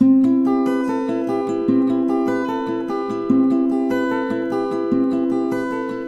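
Acoustic guitar fingerpicked: the F-chord arpeggio pattern, with the bass note on the third fret of the D string. The bass note comes round again about every second and a half, and the notes are left to ring.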